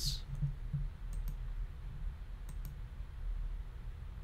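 Faint clicks of a computer keyboard and mouse in use, in two quick pairs, over a steady low hum.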